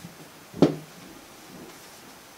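A single sharp tap of a hand on a touchscreen display about half a second in, over faint room tone.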